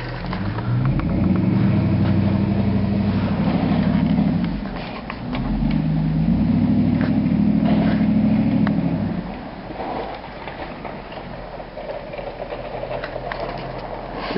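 A snowplow truck's engine revving hard in two long pushes of about four seconds each, pitch shifting as it works through deep snow, then dropping back to a lower running sound.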